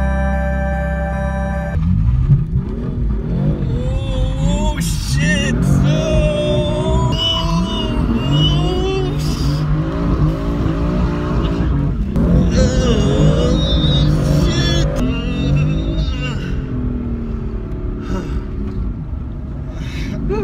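Interior sound of a roughly 600-horsepower supercar driven hard in a drift, its engine revving up and down again and again, with tyre squeal at times. The first couple of seconds are background music.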